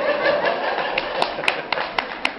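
An audience applauding, with a few sharp knocks or claps standing out in the second half.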